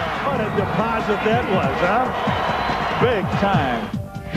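A man's voice talking throughout, broadcast-style commentary over the noise of an arena crowd.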